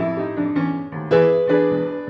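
Grand piano playing an 8-bar blues accompaniment between sung lines, with a loud chord struck about a second in.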